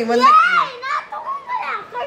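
A child's voice speaking in a very high pitch, rising about half a second in and then falling back.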